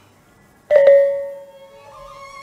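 Balinese trompong gong-kettles struck twice in quick succession about two-thirds of a second in, loud, then ringing on with a steady bell-like tone that slowly dies away. A higher held tone joins near the end.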